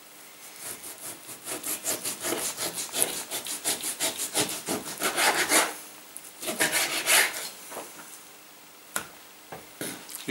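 A kitchen knife sawing back and forth through a slab of sirloin beef on a wooden chopping board. There is a quick run of strokes lasting about five seconds, then a shorter run, then a couple of sharp knocks near the end.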